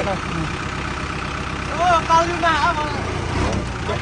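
Kubota tractor's diesel engine running steadily. A person's voice cuts in briefly about two seconds in.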